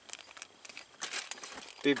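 Clear plastic zip bag with a coiled cable inside crinkling as it is handled, in short irregular rustles that get busier about halfway through.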